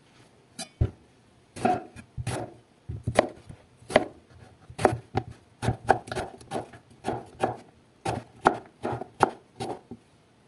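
Chef's knife slicing an eggplant on a wooden cutting board, a quick series of sharp knocks of the blade on the wood, about two cuts a second.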